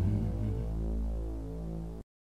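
Final low chord of a live rock band's electric guitars and bass ringing out through the amplifiers as a steady drone, slowly fading, then cut off suddenly at the end.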